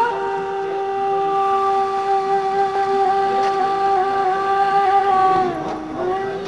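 Background music: a wind instrument holds one long, steady note, then slides down in pitch near the end.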